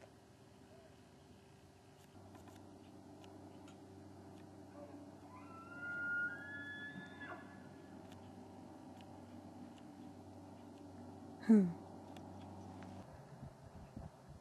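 A bull elk bugling in the distance: one faint, high whistling call that rises and then holds for about two seconds, near the middle.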